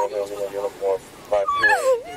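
A high-pitched human voice whimpering in short broken bursts, with a rising cry at the very start and a falling cry near the end.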